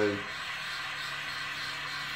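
Gas torch flame hissing steadily while it heats scraps of platinum on a ceramic block, kept low for a slow heat-up at the start of a melt.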